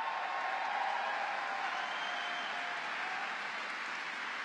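Large audience applauding and cheering, with a couple of long held cheers over the clapping in the first part.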